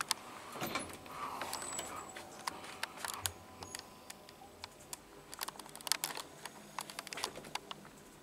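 Elevator cab doors finishing their close near the start, followed by scattered, irregular light clicks and ticks inside the padded cab.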